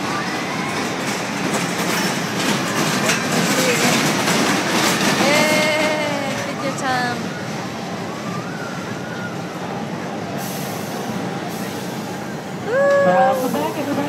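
Kiddie roller coaster cars clattering along their steel track, loudest a few seconds in as the train passes, with voices and shouts over the fairground noise.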